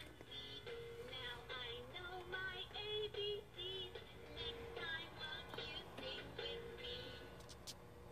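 Toy electronic keyboard sounding a string of single pitched notes with a warbling, voice-like synthetic tone, pressed one after another at an uneven pace.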